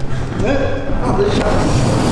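A man shouting 'Nu!' ('Now!') with a rising voice, followed by more talk, over background music with a steady low bass line.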